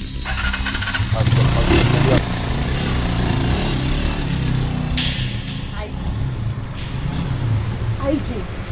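Motorcycle engine running as the bike rides past along a street, under background music.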